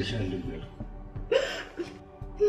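A woman crying, with a sharp, catching sob about a second and a half in.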